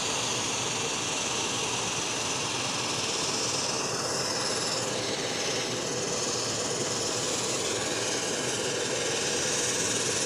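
Single-engine skydiving jump plane running on the ground during a quick turnaround, a steady even engine noise with a faint steady whine in it.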